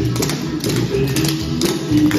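A recorded song with guitar, with the sharp taps of clogging shoes from a line of dancers stepping together on a hard floor.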